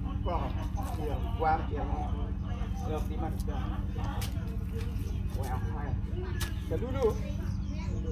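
Background voices of several people talking, not clearly worded, over a steady low hum, with a couple of sharp clicks or knocks.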